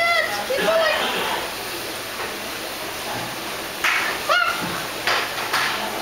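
A young child's high-pitched squeals and laughter in short bursts: a couple near the start and a rising-and-falling squeal about four seconds in, with breathy laughs between.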